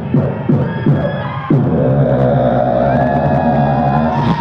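Live human beatboxing through a PA: a run of quick, punchy vocal beats, then from about a second and a half in a long held low drone, didgeridoo-like, with a higher sliding tone sung over it.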